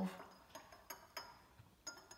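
Metal teaspoon clinking lightly against a glass tumbler of water as salt is stirred: four or five faint, separate clinks.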